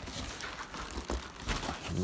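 Cardboard and plastic packaging crinkling and rustling, with a few soft knocks, as a large cardboard kit box is shifted and turned around inside a shipping carton.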